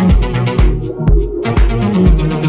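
Tech house DJ mix playing, with a steady kick drum on every beat, about two beats a second, and hi-hats between the kicks.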